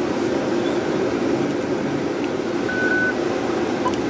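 Steady rush and hum of a ventilation system running throughout, with a brief beep about three seconds in.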